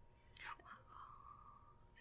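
Near silence in a small room, with a faint, brief whisper-like vocal sound about half a second in.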